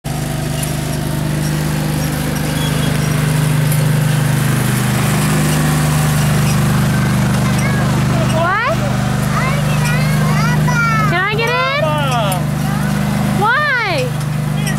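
Riding lawn tractor's small engine running steadily while it tows a cart. High-pitched calls that rise and fall in pitch come several times in the second half.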